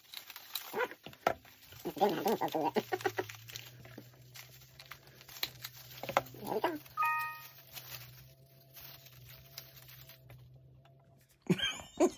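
Paper strips rustling and crinkling as a paper chain is handled, with sharp clicks from a hand stapler joining the loops. A brief tone sounds about seven seconds in, and a loud handling bump comes near the end.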